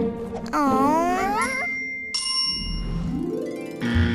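Cartoon sound effects over light background music: a wavering, wordless vocal glide, then a bright ding about halfway through, then a rising sweep near the end.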